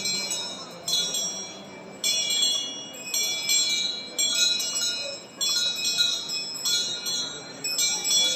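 Small high-pitched bells rung in the procession, struck in irregular strokes roughly once a second, each ringing out and dying away, over a murmuring crowd.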